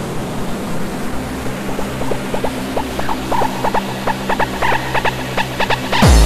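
Breakdown in a hardcore techno (gabber) track: the kick drum drops out, leaving a noise wash over a held low synth tone. Short synth stabs come in about two seconds in and come faster toward the end, building back up.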